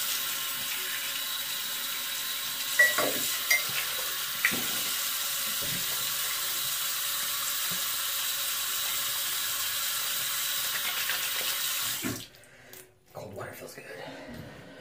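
Bathroom sink tap running steadily while a face is rinsed under it, with a few splashes about three to four and a half seconds in; the tap is shut off about twelve seconds in.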